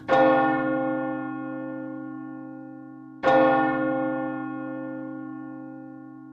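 A bell struck twice, about three seconds apart, each stroke ringing and slowly fading.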